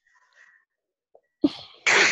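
A person sneezing: a sharp start about one and a half seconds in, then a loud burst near the end.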